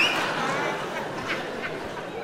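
A theatre audience laughing after a punchline, the laughter dying down over the two seconds.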